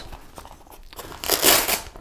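Velcro hook-and-loop closure on a BCD's integrated weight pouch being pulled apart: a short rasping rip lasting about half a second, a little past the middle, after faint handling of the pouch fabric.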